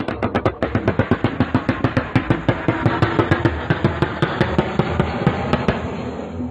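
Sustained automatic gunfire, a long unbroken run of sharp shots at about seven a second lasting about six seconds.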